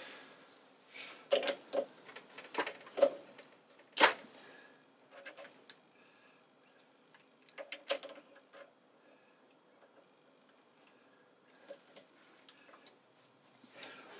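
A steel workpiece being turned round by hand and re-seated in a Burnerd three-jaw lathe chuck: a series of sharp metallic clicks and knocks, the loudest about four seconds in, with quiet spells between.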